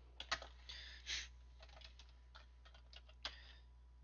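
Computer keyboard typing, faint: a quick run of keystrokes in the first second or so, then a few scattered key presses, over a low steady hum.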